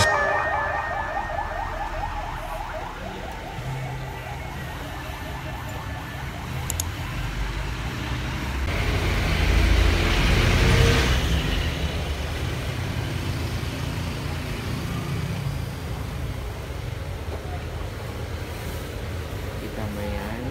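Street traffic: a steady rumble of road vehicles, with one vehicle passing and growing louder to a peak about ten seconds in before fading.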